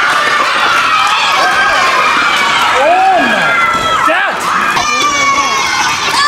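A group of children cheering and shouting together, many high voices at once, celebrating a big score.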